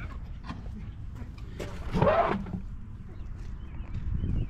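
A dog giving one short call about two seconds in, over a low steady rumble.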